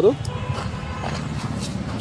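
Steady outdoor background noise with faint footsteps, in a short pause between spoken lines.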